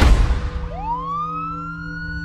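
A heavy hit at the start that fades into a rush of noise, then a siren winding up in pitch and levelling off on a high held note, over a low steady drone.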